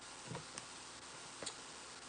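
Quiet room hiss with three faint, short clicks, about a third of a second, half a second and a second and a half in.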